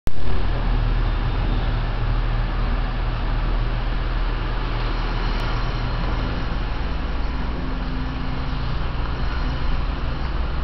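Steady low rumble with an even hiss and no speech, starting with a brief loud burst.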